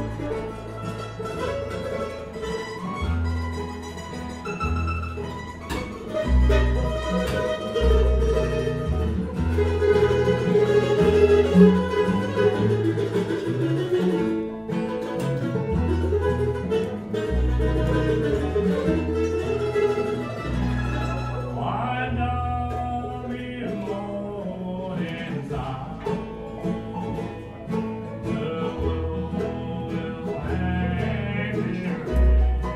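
Live acoustic bluegrass band playing: acoustic guitar, banjo and mandolin over upright bass notes that change about once a second. About two-thirds of the way through the sound thins and a new lead line comes in.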